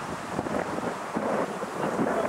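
Wind buffeting an outdoor microphone: an uneven, gusting rumble and hiss, with faint voices from the pitch in it.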